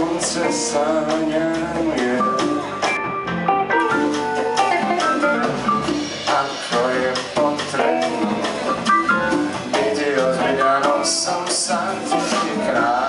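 A live jazz band playing a song, with guitar heard over the drums and bass.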